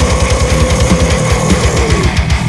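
Heavy metal band recording: distorted electric guitar over a fast, even run of low drum beats, with a held note ringing above them.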